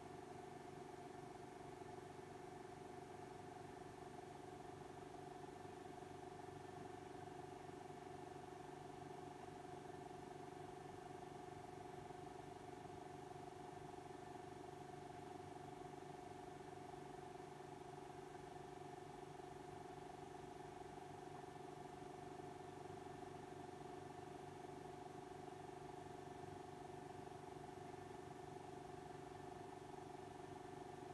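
Faint, steady hum made of several fixed pitches, unchanging throughout, with no other distinct sounds.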